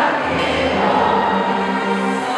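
A symphony orchestra sounding many sustained, overlapping notes in a large concert hall.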